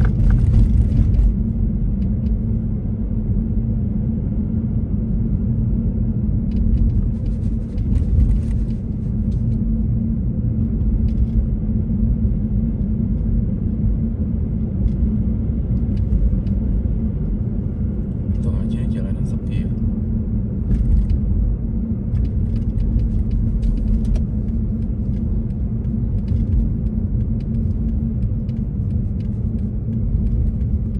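Steady low rumble of a car driving on a snow-covered road, heard from inside the cabin.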